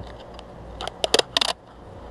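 Several short, sharp clicks and light clatters, bunched together about a second in.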